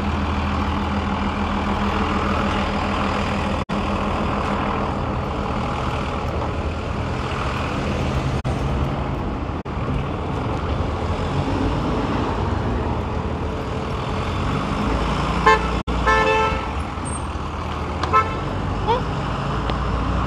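Steady city street traffic noise from passing vehicles, with a short car-horn toot about three quarters of the way through and a shorter beep a couple of seconds later.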